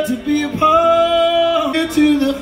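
Male singer performing live through a festival PA, holding one long sung note for about a second, with guitar accompaniment.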